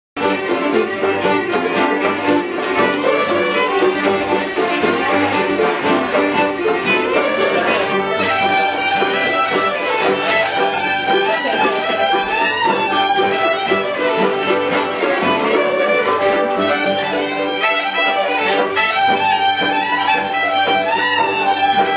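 Several fiddles playing a tune together in unison, with strummed guitar keeping a steady rhythm underneath: a live acoustic string jam in a room.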